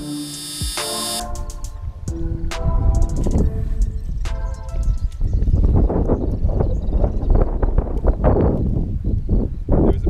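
A short musical sting with a few held notes for the first four seconds, then wind buffeting the microphone in irregular gusts, with some rustling.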